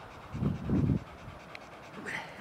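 A dog panting, a short run of quick breaths about half a second in.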